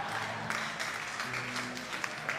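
Faint, scattered clapping from a church congregation over soft sustained music notes.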